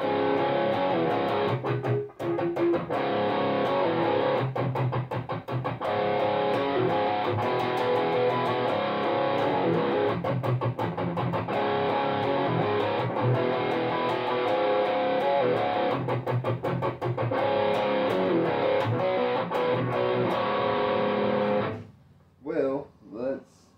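Heavily distorted electric guitar riffing: an Ibanez RG2EX2 in drop C sharp tuning played through a Cool Music Insane Distortion pedal into a Bogner Ecstasy Mini amp and 1x12 cab. The riffing is continuous with a few brief choked pauses, and stops abruptly at the end.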